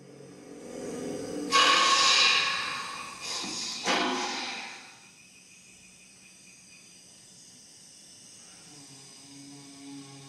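Breathy, hissing blasts blown through the mechanical larynx and hollow crest of a Corythosaurus-skull instrument. A breath swells into a loud blast about a second and a half in, stops, comes back as a shorter burst near four seconds, then fades. Near the end a low steady pitched drone begins.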